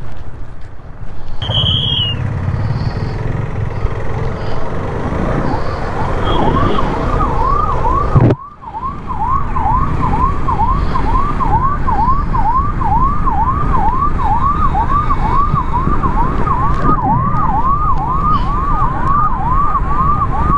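Police siren yelping in quick, repeating rising sweeps, about two a second, starting some six seconds in and carrying on steadily.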